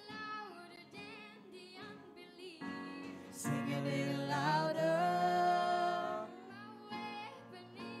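Live worship music: a voice singing long, held notes over electric guitar and bass guitar. The singing swells to its loudest in the middle.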